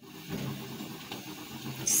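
Green capsicum strips frying in oil in an aluminium pot: a steady, quiet sizzle.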